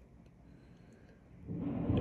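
Quiet room tone, then about a second and a half in a low rumble of thunder swells up.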